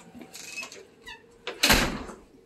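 Door being shut: a short squeak about a second in, then a loud thud as it closes.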